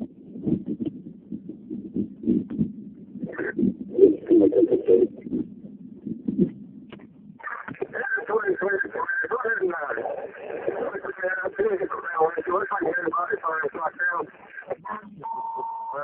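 Mostly speech: muffled talk at first, then from about halfway a thin-sounding voice over a fire-service two-way radio, followed near the end by a steady beep.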